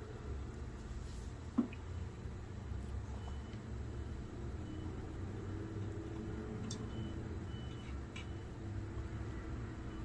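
Quiet room tone with a low steady hum, broken by a single light knock about one and a half seconds in and a couple of faint ticks later, as a small glass of vinegar and a plastic dropper are picked up and handled over a steel tray.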